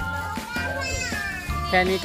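Children's voices at play over background music with long held notes; a child speaks a short phrase near the end.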